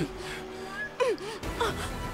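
A woman's quick startled gasps and short cries, a cluster of them about a second in and another just after.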